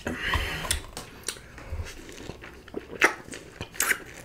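Close-miked biting and chewing of crunchy food, with irregular sharp crunches, the loudest near the start and again around three seconds in.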